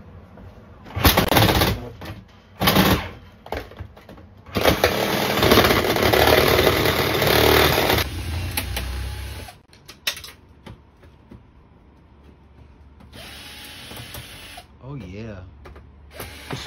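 Corded power tool working on the metal cabinet of an old Frigidaire freezer: two short bursts, then a steady run of about three and a half seconds before it winds down.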